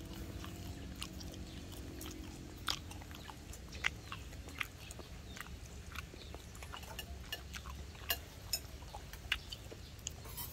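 Spoons clinking irregularly against bowls and plates during a meal, with faint chewing, over a steady low background rumble.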